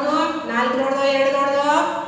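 A woman's voice speaking, drawing one word out long at a nearly steady pitch.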